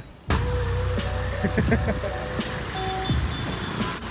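Motorcycle riding through a flooded street, a steady low rumble from the bike and the water, with background music playing over it.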